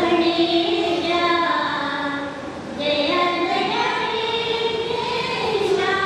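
A group of women singing together in unison into a microphone, on long held notes that glide between pitches. The singing breaks off briefly about two seconds in, then resumes with the next phrase.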